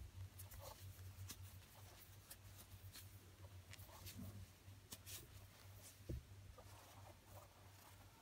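Faint rustling and light clicks of a large plastic crochet hook pulling thick T-shirt yarn through single crochet stitches, over a low steady hum. A soft knock about six seconds in.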